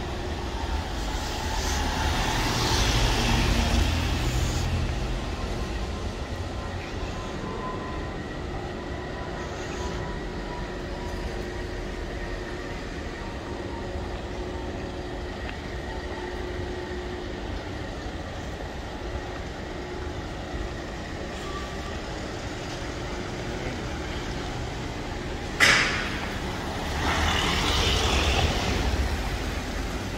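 Street traffic in a narrow city lane: vehicle engines running with a steady hum beneath, swelling loudest a few seconds in and again near the end as vehicles pass close. A single sharp bang or clatter comes a few seconds before the end.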